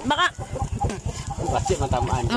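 Chickens clucking close by in short arched calls, about once near the start and again near the end, over a steady low pulsing hum.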